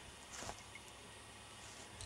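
Quiet background: a faint steady hiss with a low hum, and one brief soft sound about half a second in.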